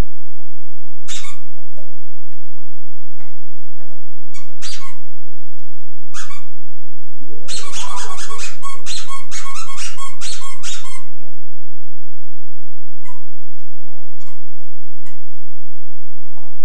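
High-pitched squeaks: single ones about a second in, then at around four and six seconds, then a quick string of them lasting about three seconds in the middle, over a steady electrical hum.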